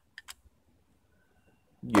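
A few brief, faint clicks of a clear plastic Noodler's fountain pen's nib section being screwed back into its barrel, in a quiet room.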